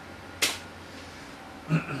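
A keyboard key press: one sharp click about half a second in, then a brief duller knock near the end, over a steady low background hum.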